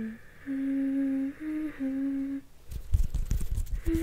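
A woman softly humming a slow lullaby-like tune, about four held notes. Near the end the humming stops and hands brush and tap against the condenser microphone, giving irregular low thumps and rustles.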